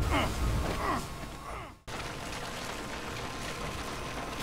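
A man grunting with strain, several grunts that fall in pitch, over the first second and a half. A sudden brief dropout follows, then a steady background hum runs on.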